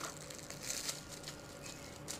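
Faint crinkling and rustling of a small clear plastic bag being handled as a camera ball head is unwrapped from it.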